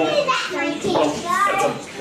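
Young children's high-pitched voices chattering and calling out in a room.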